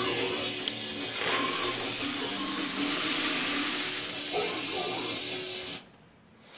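Dense hiss-like noise texture in an electronic remix, with faint low tones beneath it; it cuts off suddenly near the end.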